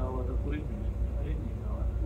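Low steady running of a Volvo B9TL double-decker's diesel engine, heard from the upper deck, with people talking nearby over it.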